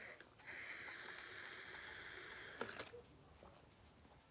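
Drinking from a plastic drink bottle: a steady hiss of liquid and air through the bottle's mouth, broken briefly near the start and stopping after about two and a half seconds. A few sharp clicks and knocks follow as the bottle comes away.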